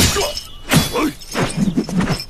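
A long-handled, broad-bladed metal weapon whooshes in heavy swings as it sweeps and scrapes through dry leaves and dirt. Sharp hits mark the strokes, at the start and again under a second in. A man's short effort shouts come with the swings.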